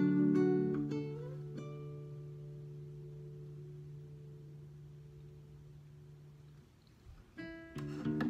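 Classical guitar playing its last few notes, then a single low note ringing on and slowly fading almost to silence. About seven seconds in, a new strummed chord starts.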